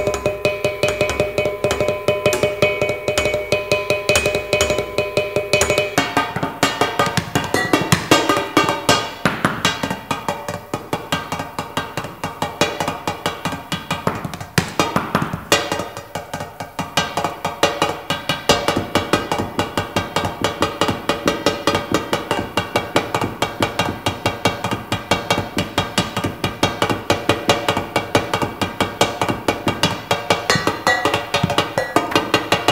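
Metal percussion improvised on kitchen objects, tins and small cymbals struck with sticks in a fast, steady stream of strokes. Ringing metallic tones hang over the strokes, holding the same pitches for the first six seconds and then changing.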